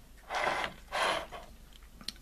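A plastic model-locomotive motor block handled and shifted on a wooden tabletop, giving two short rubbing, scraping sounds about half a second apart.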